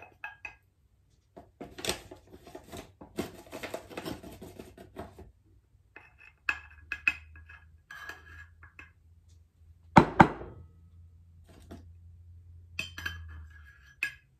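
A small metal measuring cup scraping through flour and clinking against a glass measuring cup as flour is scooped and poured. The loudest moment is two sharp taps about two-thirds of the way through, with lighter clinks before and after.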